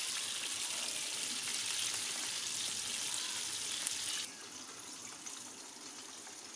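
Hot oil sizzling steadily around flour-coated chicken wings deep-frying in a pan; the sizzle cuts off abruptly about four seconds in, leaving a faint hiss.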